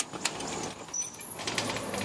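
A door opening as someone walks through it: a couple of clicks, then a thin, very high squeak that falls slightly in pitch for about a second.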